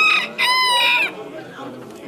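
A rooster crows once: a single short, high, even call of about half a second, starting about half a second in and dipping slightly in pitch as it ends.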